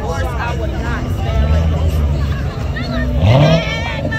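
Chevrolet Corvette V8 rumbling at parade pace, then revving up sharply about three seconds in; the rev is the loudest part. Crowd chatter runs throughout.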